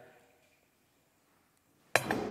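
Near silence, then just before the end a sharp metal knock as a welded steel shrinking die is set down on a metal plate.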